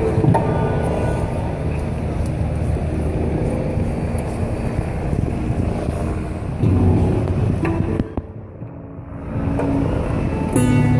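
Busy city-square ambience: steady traffic and crowd noise, with music that comes and goes. The sound drops away briefly about eight seconds in.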